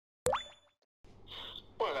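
A short synthetic pop sound effect opening the video, with a quick upward pitch sweep that fades within about half a second. A man starts speaking near the end.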